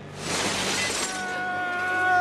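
A film sound effect: a burst of noise that rises quickly and fades over about a second. It is followed by the film score holding a few steady high notes.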